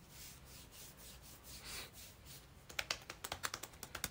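Faint rubbing of hands against bare arms and clothing, then a quick run of about a dozen light clicks in the last second and a half.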